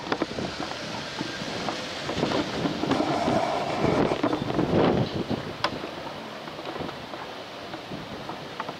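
Outdoor traffic noise with wind on the microphone; a vehicle's sound swells about three to five seconds in, then fades.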